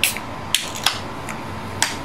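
Aluminium Sapporo beer can being opened by its pull tab: a sharp crack at the start, then a few lighter clicks of the tab.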